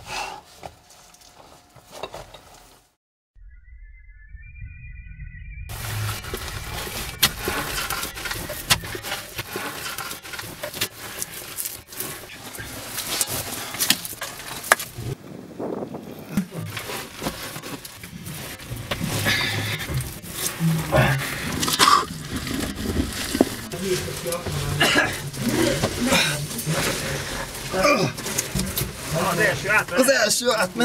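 Scraping and knocking of soil and rock being dug out by hand in a cramped cave passage: a dense run of clicks and knocks from about six seconds in, with voices joining in the second half.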